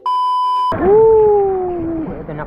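Colour-bar test-tone beep, a steady high tone lasting under a second that cuts off abruptly. It is followed by a loud, long, high cry that rises briefly and then slides slowly down in pitch.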